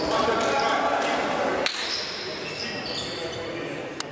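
Echoing voices of players and onlookers in a sports hall during an indoor futsal match, with a ball bouncing on the hard court floor. The sound drops suddenly just under two seconds in.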